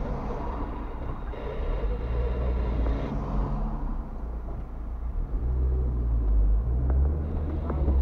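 A car's engine and road noise inside the cabin, a steady low rumble that grows louder in the second half as the car pulls away.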